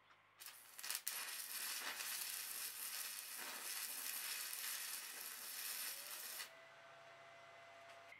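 Electric arc welding on the kiln's steel frame: the arc strikes with a few sharp crackles just under a second in, then sizzles steadily for about six seconds and stops suddenly.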